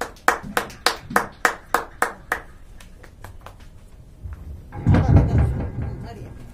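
Hand claps in a quick, even rhythm, about three a second, dying out after a couple of seconds. Near the end there is a loud low rumble and thump close to the microphone.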